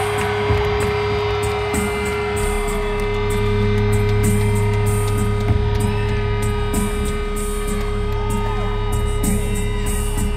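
Live rock band playing: electric guitars, bass and drums, with a long held note and a steady beat.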